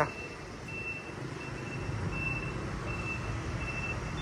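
Street traffic: a steady hum of motorbike and car engines. A faint, high electronic beep repeats at an even pace from about a second in.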